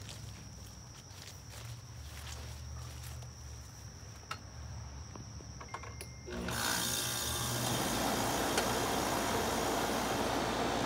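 An older central air conditioner's outdoor condenser unit starts up about six and a half seconds in, when its disconnect is put back in, and then runs loud and steady with compressor and condenser fan noise. Before it starts there are only a low hum and a few faint clicks and knocks.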